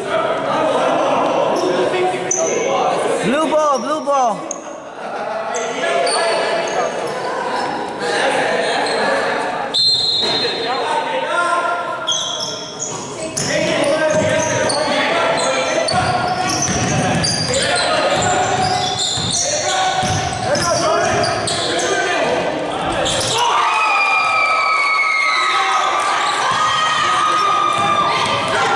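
A basketball being dribbled and bouncing on a hardwood gym floor during live play, ringing in a large echoing hall.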